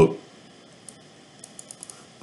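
Computer mouse clicking: one small click about a second in, then a quick run of four or five faint clicks near the end. A short spoken "whoop" comes right at the start.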